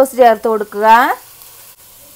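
A voice speaking for about the first second, then soft sizzling of chopped onions frying in a non-stick pan, with soy sauce just poured onto them.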